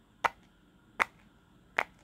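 Three sharp pops, evenly spaced about three-quarters of a second apart, as fingertips press bubbles of a silicone push-pop fidget toy inside out.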